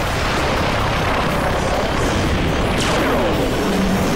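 Animated battle sound effects: a dense, continuous run of blasts and rushing noise, with a falling-pitch swoop about three seconds in.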